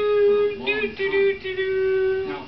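A voice singing a wordless tune in long held notes on nearly one pitch, with short breaks between them.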